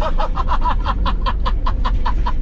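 A man laughing hard in a fast, even run of "ha-ha" bursts, about seven a second, over the steady low rumble of the moving SUV heard from inside the cabin.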